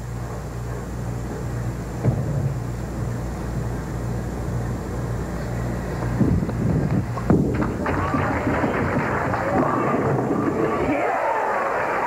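Quiet bowling-centre crowd murmur over a low hum while a ten-pin bowling ball is delivered; about seven seconds in there is a sharp crash of the ball into the pins, and the crowd then breaks into cheering and applause that carries on to the end.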